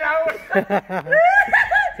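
Men's voices talking and laughing in excited chatter.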